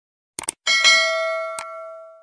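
Subscribe-animation sound effect: a quick double mouse click, then a bright bell chime that rings out and fades over about a second and a half, with another single click partway through.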